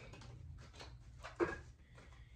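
Tarot cards being shuffled by hand: faint soft flicking and rustling of the cards, with one sharper card tap about a second and a half in.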